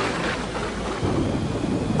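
Thunder crashing and rolling in a storm, with rain.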